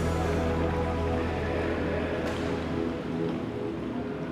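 Background music ending on a held chord that slowly fades out.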